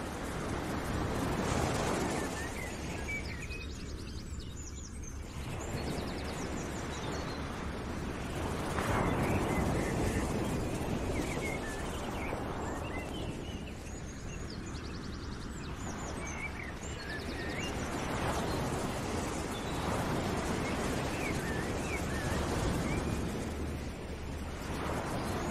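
Outdoor nature ambience: a rushing noise that swells and fades every several seconds, with small birds chirping and trilling over it.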